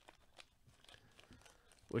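Faint crinkling and rustling of a plastic bag handled by gloved hands, with a few small clicks.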